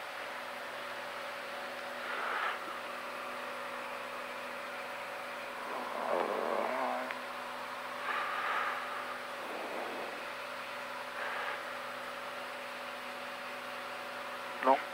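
Steady drone of a Cessna Skyhawk's piston engine and propeller in flight, heard from inside the cockpit, with a few faint brief sounds rising over it.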